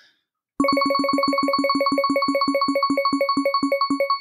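Prize-wheel spin sound effect: a fast run of short, identical electronic beeps, about eight a second, starting about half a second in and slowing slightly as the wheel winds down.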